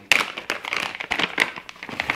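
Plastic packaging of a pack of soft-plastic fishing worms crinkling as it is handled and opened, a quick irregular run of crackles.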